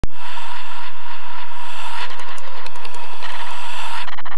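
Electronic title-sequence sound effect of a TV programme: a loud hissing wash with a steady whistle-like tone, joined about halfway through by a choppy, stuttering tone and light clicks.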